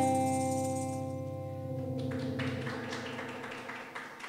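Archtop electric guitar's final chord ringing out and fading as a song ends, with a tambourine shaken in short jingles, about four a second, from about two seconds in.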